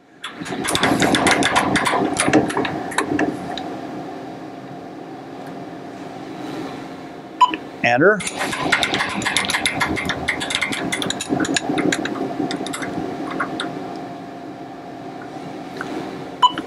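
Optical comparator's X-Y stage being cranked to move the part under the crosshairs: a continuous mechanical whirring with rapid fine clicking, over a steady hum. It starts just after the beginning and breaks off briefly about halfway through.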